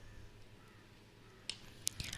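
Quiet background with a faint low hum, broken by two short faint clicks about a second and a half and just under two seconds in.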